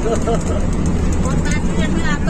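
Steady low drone of a Volvo B11R coach's engine and tyres heard inside the cab at cruising speed, with voices talking over it from about halfway through.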